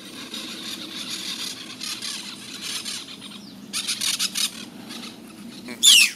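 Outdoor field ambience: a steady low hum under a high hiss, a short burst of high, fine chirring about four seconds in, and a sharp, falling squeal just before the end.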